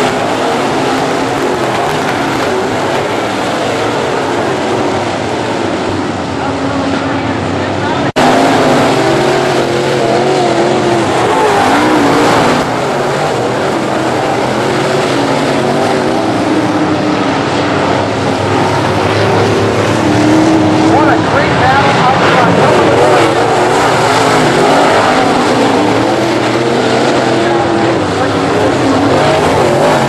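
A pack of dirt late model race cars' V8 engines running at racing speed around a dirt oval, their engine notes rising and falling as the cars accelerate and lift for the turns. The sound cuts out for an instant about eight seconds in.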